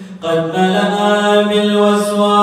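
A man's voice chanting an Arabic supplication (munajat) into a microphone in a long, held melodic line. After a short breath at the start, the voice comes back in about a quarter second in and sustains with slight bends in pitch.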